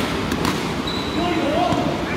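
Several voices over a steady noisy background, with a few sharp knocks in the first half-second.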